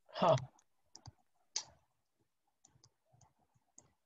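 A few sharp clicks, the loudest about a second and a half in, followed by fainter ticks: a stylus tapping on a tablet screen while writing. A brief voiced sound comes right at the start.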